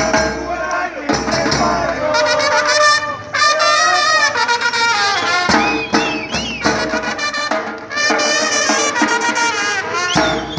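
A supporters' street band playing a tune on brass horns over a steadily beaten bass drum.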